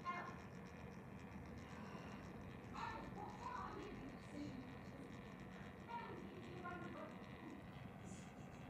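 Faint, distant voices over quiet room noise.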